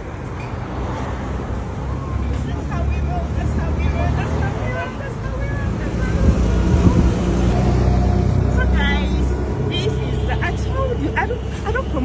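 Roadside traffic noise: a steady low engine rumble with people chattering in the background.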